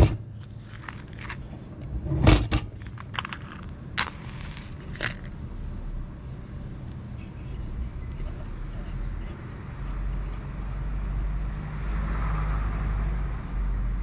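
A run of sharp clicks and metallic knocks as a hurricane lantern is handled and lit with a lighter, the loudest about two seconds in. A steady low rumble of outdoor background follows in the second half.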